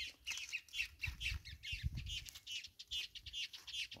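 Birds chirping: a quick, steady run of short, high calls, several a second.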